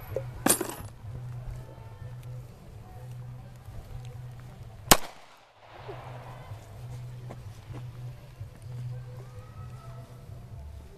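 Two pistol shots from a Ruger 9 mm handgun, about four and a half seconds apart, each a single sharp crack. The second, near the middle, is the louder of the two.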